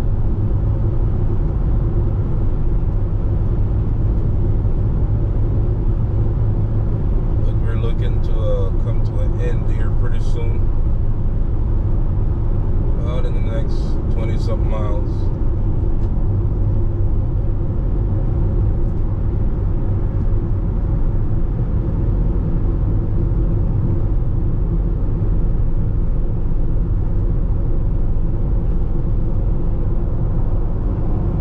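Steady low road rumble of a car cruising at highway speed, heard from inside the cabin: engine and tyre noise at an even level. A person's voice is heard briefly twice near the middle.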